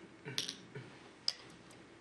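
Go stones clicking on a wooden Go board and against each other as a player's hand moves them, with a single sharp click about a second and a quarter in.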